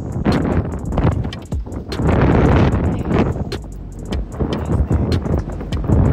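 City street sound: wind buffeting the phone's microphone over passing traffic, with a louder rush about two seconds in and scattered sharp knocks.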